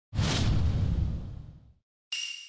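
Video-editing whoosh-and-boom sound effect: a sudden rush of hiss over a deep rumble that dies away over about a second and a half.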